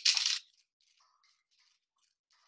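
Coarse salt and a salt grinder: a short loud rush of salt crystals at the start, then faint, scattered crunching as the grinder is twisted.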